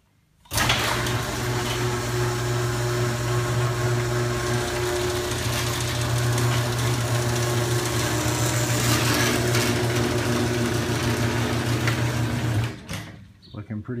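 Craftsman (Chamberlain) 1/2 HP belt-drive garage door opener running with a steady motor hum as it raises the door, working again on its newly replaced drive gear and sprocket. It starts about half a second in and cuts off abruptly about a second before the end.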